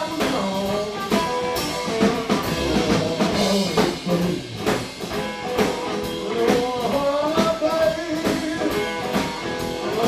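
Live blues band playing: a lead guitar with bent notes over a steady drum-kit beat.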